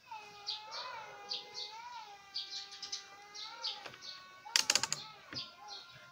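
Small birds chirping in quick, repeated high notes, over a long wavering call held for nearly four seconds. About four and a half seconds in, a brief burst of sharp clicks is the loudest sound.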